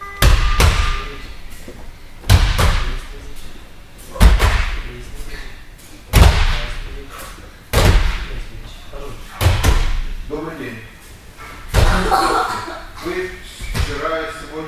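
Back breakfalls on gym mats: bodies and arms slap the mat with loud thumps about every two seconds, each ringing on in the hall's echo. Voices come in over the last few seconds.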